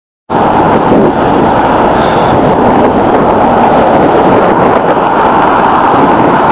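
Steady, loud rush of wind buffeting the microphone of a camera mounted on a moving bicycle, over road noise, starting abruptly just after the start.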